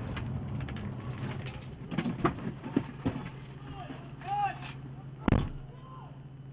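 Four police handgun shots in quick succession about two seconds in, heard at a distance through a patrol car's dash-cam microphone, with officers shouting around them. A loud thump comes near the end.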